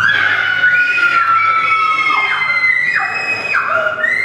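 High-pitched wailing cries from a woman's voice, held long notes that slide up and down between pitches, at times two voices at once.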